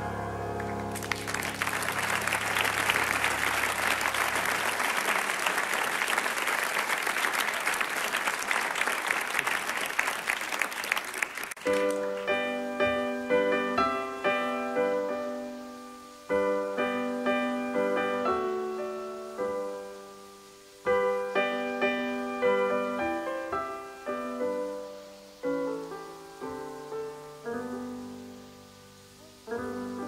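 Concert audience applauding for about ten seconds while the last low piano note rings out. The applause stops suddenly and solo piano begins a slow introduction of chords, struck in phrases that each die away before the next.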